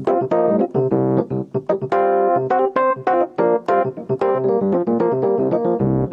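Electric piano playing short, staccato jazz chords, slightly dissonant, in a quick restless rhythm of several stabs a second.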